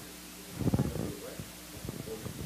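A low, muffled rumble lasting about half a second, starting about half a second in, over faint background murmuring.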